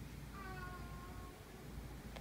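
A tuxedo cat giving one meow about a second long, its pitch falling slightly.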